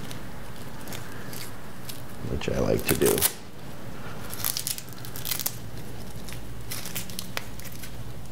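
Hook-and-loop cable strap ripped open on a bundle of camera cables, loudest about two and a half to three seconds in. Shorter rips and cable rustling follow a second or two later.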